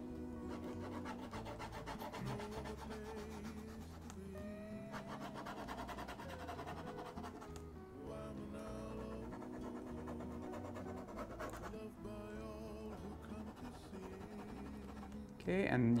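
Soft background music with held notes over a slowly changing bass, with faint scratching of a felt-tip marker shading on paper underneath.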